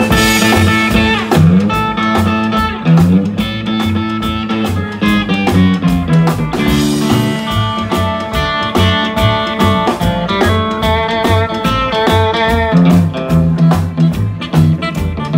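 Live rockabilly band playing an instrumental break: electric guitar lead with bent notes over a steady drum beat and a moving bass line.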